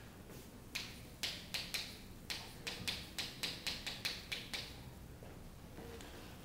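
Chalk writing on a chalkboard: a quick run of about fifteen sharp taps and short scratches over some four seconds, stopping about four and a half seconds in.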